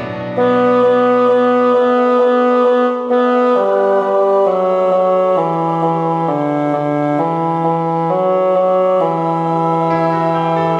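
Choral practice track: the four choir parts played by a synthesized brass-like voice, with the bass line brought forward. Steady, vibrato-free chords, first repeated on the beat, then moving stepwise about once a second.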